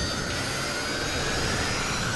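Film sound effect of a jet turbine spinning: a steady high whine that creeps slightly upward over a continuous rushing roar.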